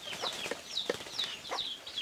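Birds calling: a run of short, high, falling chirps, about five in two seconds, with a few faint clicks between them.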